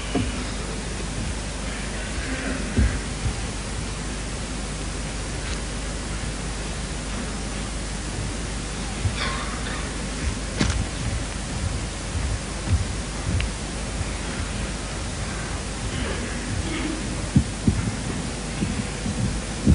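Steady hiss and low hum of an old recording, with scattered faint thumps and faint indistinct voices from a lecture audience.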